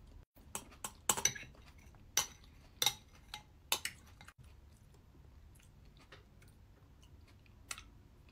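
Close-up eating sounds: chewing a spoonful of creamy dessert with crisp red grapes, with a few sharp crunches and clicks in the first four seconds and fainter ones after. A metal spoon scrapes and clinks against a glass bowl.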